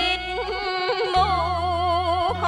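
Woman singing a tuồng (hát bội) melody in a high voice with heavy vibrato, over low held instrumental notes that change pitch about a second in.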